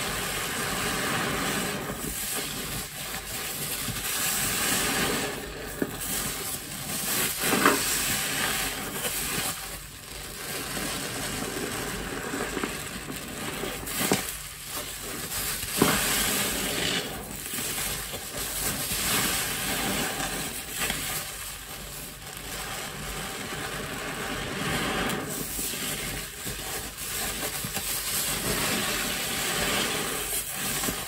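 A soft yellow grout sponge soaked in dish-soap lather being squeezed and wrung by hand: wet, squelching foam. It comes in repeated swells, with sharper squelches about 8 and 16 seconds in.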